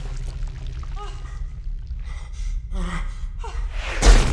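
Film soundtrack: a steady low sci-fi hum under a few short gasps and breaths from the actors, most of them in the second half.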